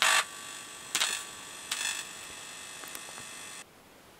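Homebuilt signal tracer's speaker giving out amplified hiss with a steady buzz, broken by three short bursts of crackle as the probe is handled. The sound cuts off suddenly shortly before the end.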